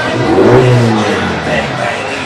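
A car engine revs briefly, rising in pitch and then settling back over about a second and a half, over background crowd chatter.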